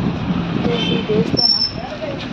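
Car cabin noise while driving: a steady low engine and road rumble, with voices over it and a brief high thin tone a little past the middle.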